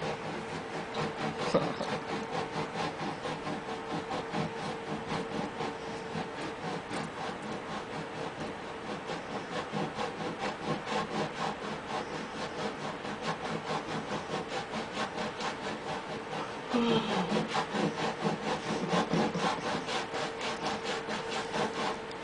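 A hand saw cutting through a block of solid wood in steady back-and-forth strokes, about three a second.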